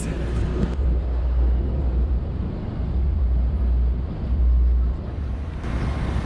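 City street noise: a steady low rumble of traffic.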